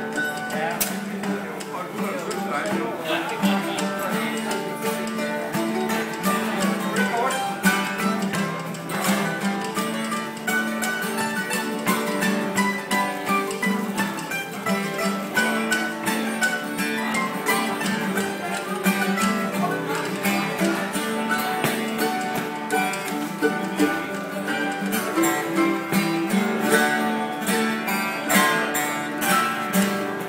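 Instrumental break of an acoustic folk song: mandolin and acoustic guitar playing together, with spoons clicking along in rhythm.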